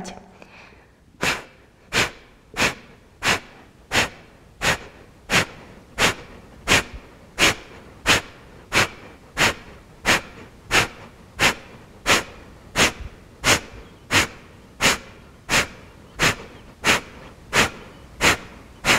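Kapalabhati breathing: a woman's short, forceful exhalations through the nose, evenly paced at about three every two seconds, starting about a second in.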